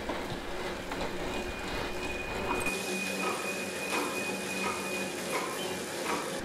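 Tacx Neo direct-drive smart trainer and bike drivetrain spinning fast under a sprint: a steady hum, with a thin high tone for a few seconds in the middle. Partway through, the sound changes from the rider's lav mic to the brighter camera mic.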